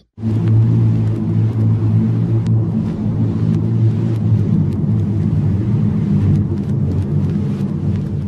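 A loud, steady low rumble with a humming, engine-like pitch. It starts abruptly and tapers off near the end, with a few faint clicks in it.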